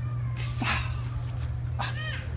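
A short hiss about half a second in, then a brief high-pitched vocal sound near the end, over a steady low hum.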